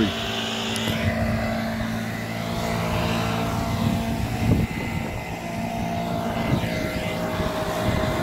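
An engine running steadily at a constant speed, a low even hum.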